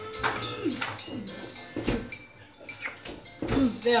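Dishes and cutlery clinking and clattering in a kitchen, with voices in between the clatters.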